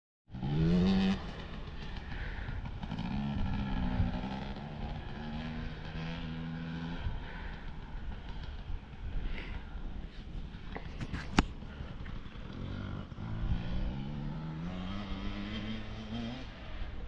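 Dirt bike engines revving on a motocross track, the pitch rising and falling, with a loud short burst of revs right at the start. There is a single sharp click about eleven seconds in.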